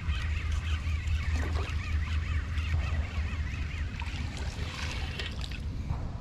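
Spinning reel being cranked to bring in a hooked bass, with scattered clicks and splashes at the water's surface over a steady low wind rumble on the microphone.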